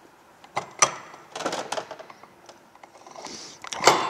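Heavy steel gears and bearings knocking and clinking against the transaxle case as the differential and countershaft are set into it by hand. A handful of sharp knocks, loudest about a second in and again just before the end.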